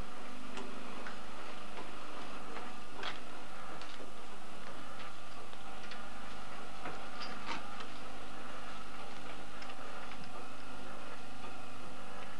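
Steady hum from a home kidney dialysis machine being set up, with a few scattered light clicks as its knobs, tubing and fittings are handled.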